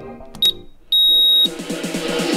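Workout interval-timer beeps: a short high beep, then a longer, louder beep about a second in, marking the end of the work interval and the start of the rest. Background music fades under the beeps, and an electronic dance track with a beat starts near the end.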